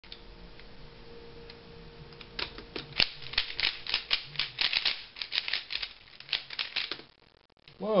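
3x3 Rubik's cube being turned at speed, its plastic layers making a fast, dense run of clicks for about four and a half seconds during a speed-solve of the first two layers. The clicking starts about two and a half seconds in and stops abruptly about a second before the end.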